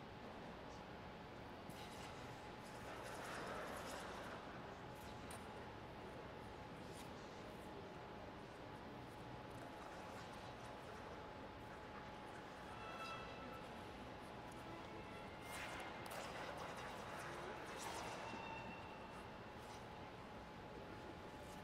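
Quiet ice-rink room tone: a faint steady hum with one thin steady tone running through it. Faint murmur-like swells come about three seconds in and again near the end, with a few light clicks.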